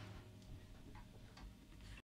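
Near silence with a low hum and a few faint clicks, about two a second.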